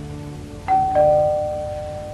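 Two-note doorbell chime, ding-dong: a higher note about two-thirds of a second in, then a lower note, both ringing on and fading slowly.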